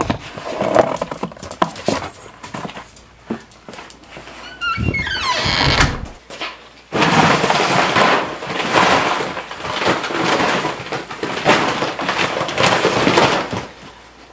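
Handling knocks and a short falling squeak, then from about halfway through a dense, steady rattling rush as dry poultry feed is scooped and poured into a plastic bucket.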